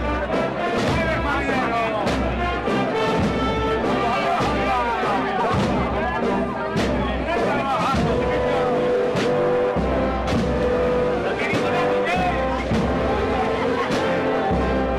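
Symphonic wind band playing a slow processional march, with regular drum beats and sharp percussion strikes under sustained brass and woodwind notes, and a long held note in the second half.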